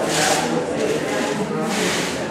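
Two short rubbing hisses, one just after the start and one near the end: a handheld camera's microphone brushing against hand or clothing as the camera swings. Voices murmur underneath.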